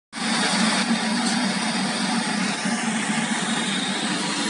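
Automatic rotary waffle cone baking machine running: a steady mechanical hum with an even rushing noise over it.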